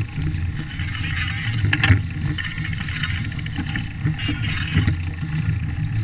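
Fat-tyred bike rolling over dry leaves and twigs, the tyre crackling through the litter, under a steady rumble of wind on the microphone. A few sharp knocks come as it hits bumps, one about two seconds in and another near the end.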